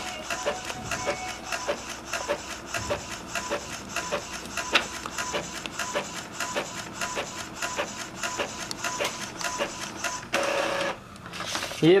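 Epson L3110 inkjet printer printing a colour photo: the print-head carriage shuttles back and forth with rapid, regular clicking over a steady motor whine. Near the end a short, louder whirr comes as the finished page feeds out.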